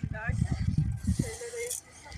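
Short bits of a person's voice, one short call near the start and one held sound in the middle, over low, uneven rumbling noise.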